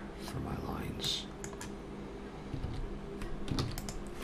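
Computer keyboard keys pressed for shortcuts, a few separate clicks with several more close together near the end.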